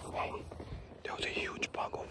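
A man whispering under his breath, too low for the words to be made out.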